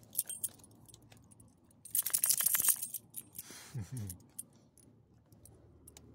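Metal ID tags and rings on a small dog's collar jingling. A few light clinks come first, then a loud burst of jingling about two seconds in. A short low sound falling in pitch follows about a second later.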